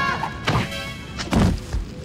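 Cartoon impact sound effects over background music: a smack about half a second in, then a heavy thud about a second and a half in as a body is thrown to the ground.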